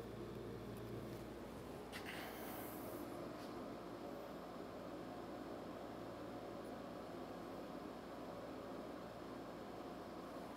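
Quiet room tone: a faint steady hum and hiss, with a faint click about two seconds in and another about three and a half seconds in.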